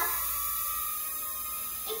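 Small toy UFO drone's propellers whining steadily as it hovers.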